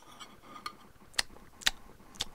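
A few light clicks of cutlery on a dish, about half a second apart, as food is served and tasted.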